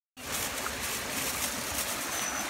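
Steady outdoor background hiss with a faint low rumble.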